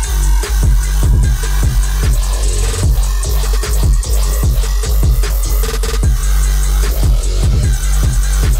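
Loud electronic dance music from a live DJ set: a deep, continuous bass line under a steady, regular kick-drum beat.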